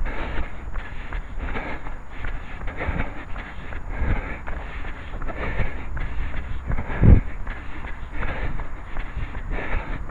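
A runner's footfalls in a steady rhythm, picked up by a head-mounted camera, over a low rumble on the microphone, with one heavier thump about seven seconds in.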